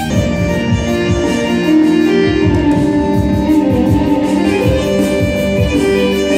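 A small live stage band of keyboard and percussion plays an instrumental interlude with no singing: held melody notes over a steady beat.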